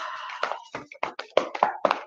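A quick run of about a dozen light, irregular taps and clicks, starting about half a second in.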